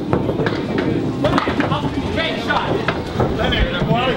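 Candlepin bowling: a small candlepin ball is released onto the lane and rolls, amid many short sharp clacks of pins and balls and a background of chattering voices.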